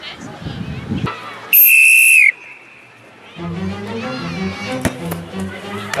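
A whistle blown once: a single loud, shrill blast of just under a second, about one and a half seconds in, signalling the kick-off. Music starts a couple of seconds later.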